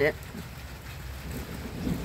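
Wind rumbling on the microphone, with a steady hiss of rain.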